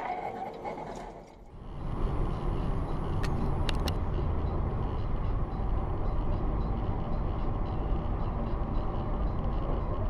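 Steady road and engine rumble of a car driving on a highway, heard from inside the cabin as picked up by a dashcam. It sets in after a brief dip near the start, with a couple of faint clicks a few seconds in.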